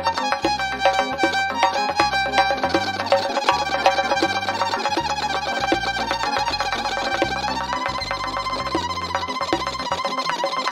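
Violin held upright and bowed gijjak-style, playing a fast, ornamented Uzbek folk tune over a steady rhythmic bass accompaniment. The melody slides up to a higher register about seven and a half seconds in.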